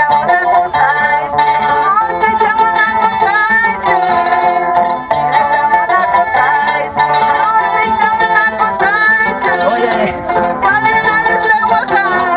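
Music: plucked string instruments with a singing voice, playing continuously at an even loudness.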